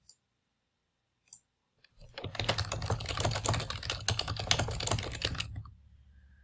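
Typing on a computer keyboard: a couple of single key clicks, then a fast, continuous run of keystrokes from about two seconds in until just before the end.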